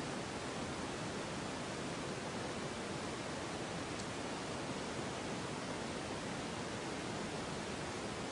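Steady, even hiss of background noise with no distinct event, and one faint tick about halfway through.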